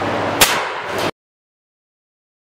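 A single sharp report of a shot fired at a clay-shooting simulator about half a second in, with a fainter click about half a second later, over the room's steady fan hum. The sound then cuts off abruptly.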